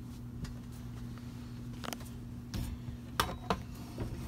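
A few short, light knocks and clicks of someone moving about and handling things in a small room, over a steady low hum.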